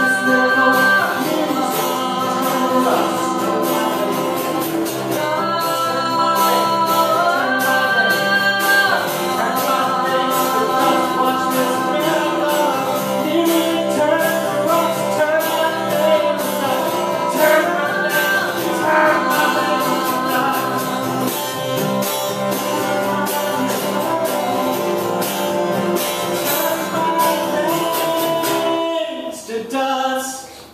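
A live acoustic folk-rock song: a strummed acoustic guitar with voices singing long, held notes in two-part harmony. The music stops about a second before the end.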